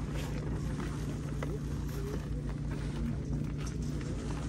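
Steady low outdoor rumble with a constant low hum, and faint distant voices.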